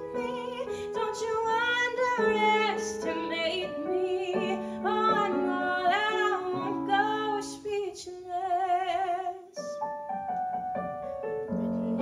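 A woman singing held notes with wide vibrato over piano accompaniment. About nine and a half seconds in the voice drops out, and the piano carries on alone with sustained chords.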